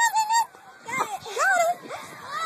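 A young child's high-pitched wordless vocal sounds: three short whining calls that rise and fall in pitch.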